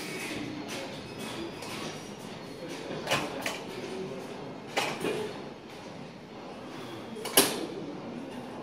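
Gym background with a few sharp metal clanks of weights, the loudest a little before the end.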